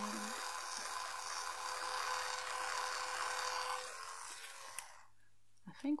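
Electric facial cleansing brush running on its low speed, a steady buzz with a hiss of bristles on skin. It fades out and stops with a click near the end, followed by a few soft-spoken words.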